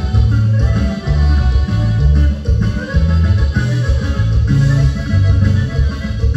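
Live band playing a Mexican dance tune loudly, a heavy bass line stepping along under it.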